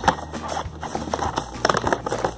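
Clear plastic toy packaging and its cardboard sleeve being handled and pried apart: irregular clicks and crackles of plastic.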